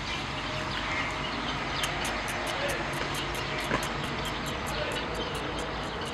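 A steady low engine rumble, like a distant aircraft or traffic, with a run of quick, faint high ticks through the middle.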